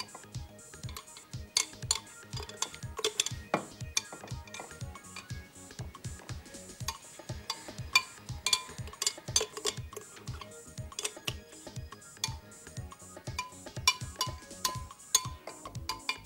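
Background music with a steady beat, over repeated clinks of a metal spoon against a glass blender jug and a tall glass as thick fruit purée is scooped out.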